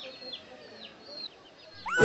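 Chicks peeping faintly: short high calls that slide down in pitch, repeated a couple of times a second.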